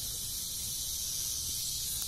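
Steady high-pitched insect chorus: a continuous, even drone.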